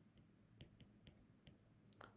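Near silence with about five faint, short clicks spread over two seconds: a stylus tapping on a tablet screen while writing.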